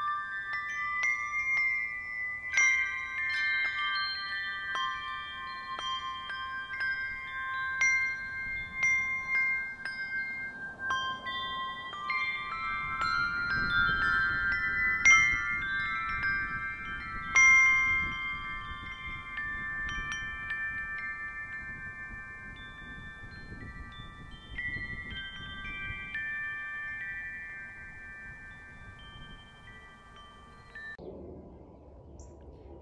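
A handbell piece played on brass handbells by two ringers: chords are struck and ring on, overlapping one another. Strikes thin out in the last seconds and the ringing fades away toward the end.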